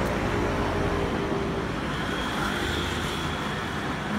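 Street traffic noise: car engines running and vehicles passing close by, a steady hum with road noise.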